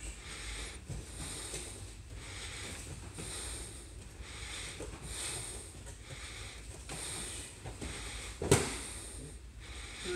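Heavy, hard breathing close to the microphone, about one breath a second, from someone winded after sparring. About eight and a half seconds in, one loud thump: a body landing on the mat as the partner is swept.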